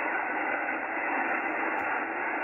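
Yaesu FTdx10 HF transceiver receiving 10-meter single-sideband: steady band-noise hiss through the narrow receive filter, with no voice coming through.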